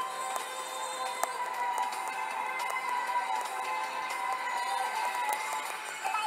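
Music playing on a car radio, heard inside the moving car, with held notes and little bass.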